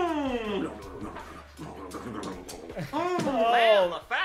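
Wordless voice sounds: a long cry falling in pitch at the start, then after a quieter pause a louder cry that rises and falls in pitch near the end.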